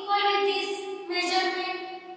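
A woman speaking, with a brief pause about a second in.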